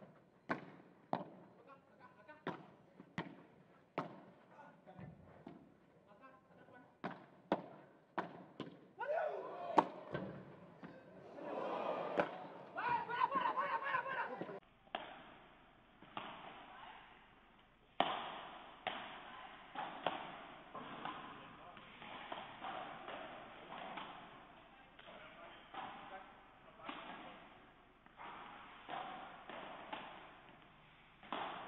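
Padel ball struck back and forth with paddles in a fast rally, each hit a sharp pop, followed by about five seconds of spectators cheering and shouting. After a sudden change about halfway through, another padel rally with duller ball hits roughly once a second and voices between them.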